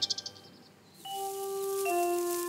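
Cartoon background music: a quick high rattle fades out at the start, and after about a second a soft held note begins, stepping down to a lower note near the end.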